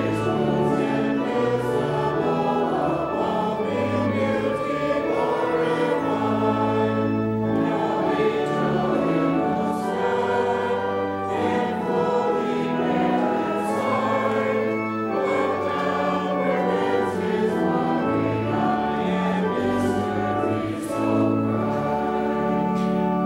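Choir singing, with long held chords that change every second or two.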